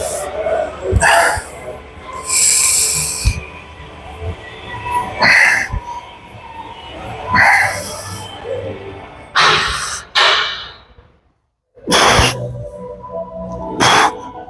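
A man's forceful breathing while pressing dumbbells on a bench: a hard breath about every two seconds with each rep, over background music. The sound cuts out completely for about a second late on.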